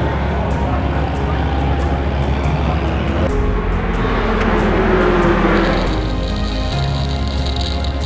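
Music with a steady beat over race cars going by at speed, an engine note falling in pitch as they pass. About three-quarters of the way through it changes to a racing car's engine at high speed heard from the cockpit.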